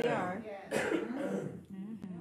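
Speech, with a short cough about three-quarters of a second in.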